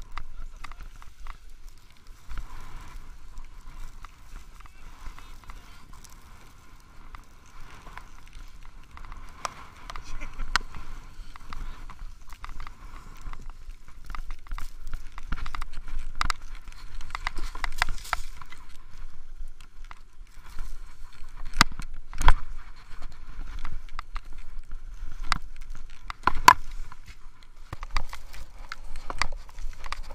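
Ski gear clattering and scraping on packed snow, with several sharp knocks, over a steady wind rumble on the microphone and the voices of other skiers in the background.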